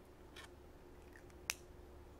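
A short, faint pen stroke on paper, then a single sharp click about one and a half seconds in, the loudest sound here.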